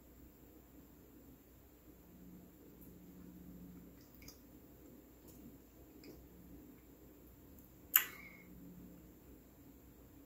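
Faint wet mouth sounds of someone tasting a sip of wine: small clicks of the lips and tongue as the wine is held in the mouth, with a faint low hum, and one sharper lip smack about eight seconds in.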